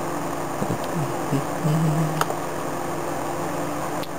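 Steady low background hum with a few brief low vocal murmurs in the first half and a single sharp click about two seconds in.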